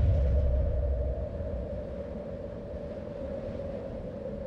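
Closing-logo sound effect: a deep rumble that fades away over the first second or so, over a steady low drone.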